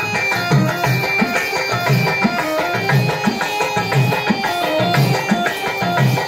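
Telugu bhajana folk music for a dance: a hand drum beats a steady rhythm of about two strokes a second under held reed-keyboard tones, with a high jingling shimmer above.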